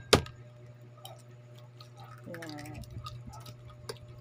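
A balut duck egg knocked sharply against a hard surface to crack its shell, a single loud knock right at the start. Then a few faint light clicks and ticks as the cracked shell is picked away with the fingers.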